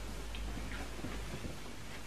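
Room tone in a pause: a steady low hum with a few faint ticks.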